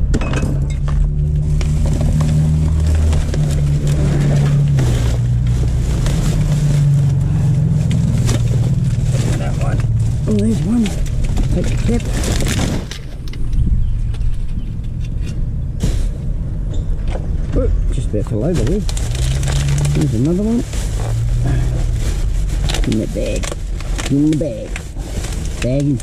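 Plastic garbage bags and loose rubbish rustling and crackling as they are moved about inside a dumpster, over a steady low rumble.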